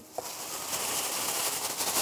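Steady crackling, rustling noise of half-frozen ice cream being mixed in a bowl.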